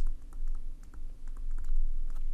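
Pen stylus tapping and scratching on a tablet surface while handwriting a word: a run of light, irregular clicks over a steady low hum.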